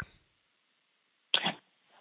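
A pause, then about a second and a half in one short, sharp breath or throat sound from a man, just before he answers; it sounds thin, with nothing above the middle of the treble, like his speech.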